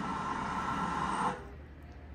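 Steady rushing outdoor noise from old footage played on a television, cutting off suddenly about a second and a half in and leaving only a faint low background.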